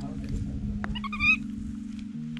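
Baby macaque giving a short, high-pitched squeal about a second in, over steady background music.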